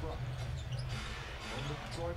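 Basketball being dribbled on a hardwood court, a run of low bounces over the steady murmur of an arena crowd.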